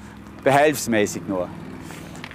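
A car engine running with a steady low hum, with a man's voice speaking briefly about half a second in.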